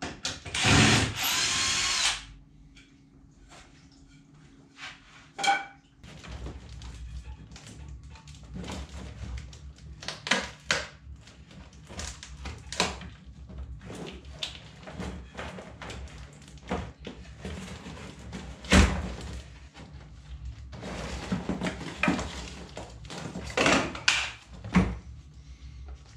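A cordless drill/driver running for about a second and a half near the start, driving into the wooden roof frame. Then scattered clicks and knocks of handling tools, wood and wiring.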